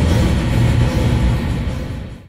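Heavy-metal outro music on a held electric-guitar chord that starts to fade near the end.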